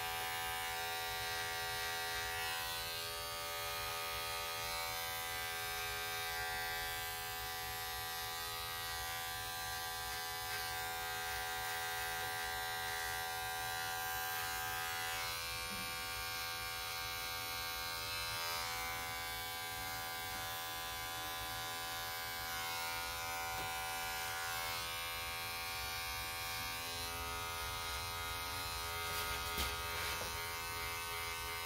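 Electric hair clippers running with a steady buzz as they cut short hair on the side of the head and the nape, with a brief tap near the end.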